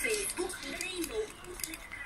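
Broadcast speech from an FM station received by the TEF6686 tuner, played quietly through a small desktop PC speaker.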